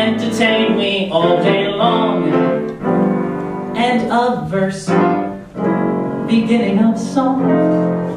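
A man singing into a microphone with piano accompaniment. The phrases end on long held notes, one of them near the end.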